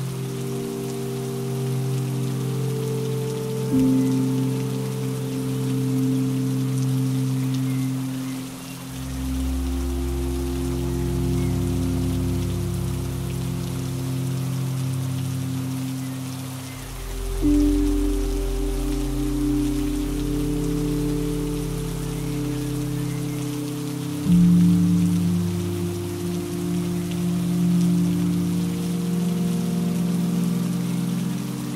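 Steady rain hiss under slow, soft relaxing music: sustained low chords that change every few seconds, with deep bass notes entering about nine seconds in and dropping out near the end.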